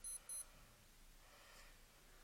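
Two short, high-pitched electronic beeps in quick succession right at the start.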